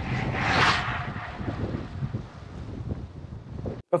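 Wind buffeting the microphone in a steady rumble and hiss. About half a second in, a brief swell of hiss rises and falls as a road bicycle rides past on asphalt.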